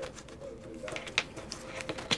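A few soft clicks and taps of a hand picking up and handling a deck of oracle cards, over a faint steady tone.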